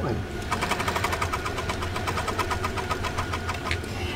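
Sewing machine running steadily at speed, stitching hand-spun yarn down onto fabric (couching), a fast even rhythm of needle strokes starting about half a second in.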